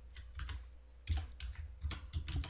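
Computer keyboard being typed on while entering code: a few scattered key clicks, then quicker keystrokes in the second half.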